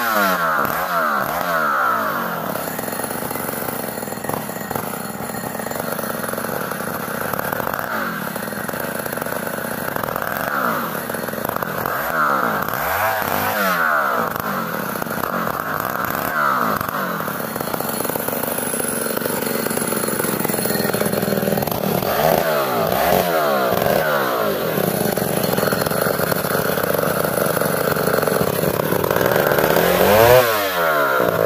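A Chinese-made STIHL-branded two-stroke chainsaw runs without a break, its revs rising and falling every second or two as it works through ulin (Borneo ironwood).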